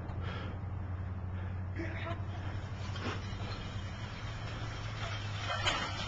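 A steady low hum with faint, distant voices, including a short call near the end.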